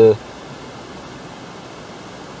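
The tail of a spoken word, then a steady, even hiss of background noise with no distinct events.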